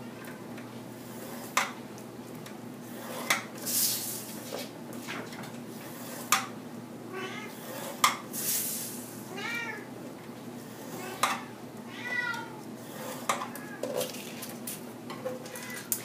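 A scoring tool drawn along the grooves of a paper scoreboard, scoring fold lines into double-sided scrapbook paper in short scratchy strokes. Sharp clicks and taps come as the paper is turned and butted against the board's fence. A few short high squeaks that rise and fall in pitch come in between.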